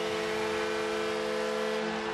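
Arena goal horn sounding in one long steady chord over crowd noise, the signal of a home-team goal.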